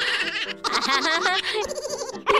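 Several girls laughing hard together, in shaking, breathy pulses of high-pitched laughter.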